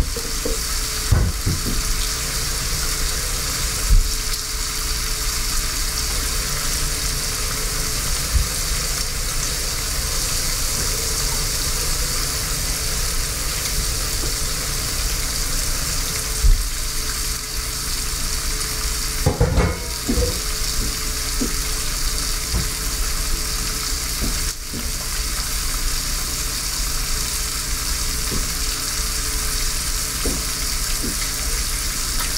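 Bacon slices frying in an electric skillet: a steady sizzling hiss of hot fat, broken by a few sharp clicks and pops, with a small cluster of them about two-thirds of the way through.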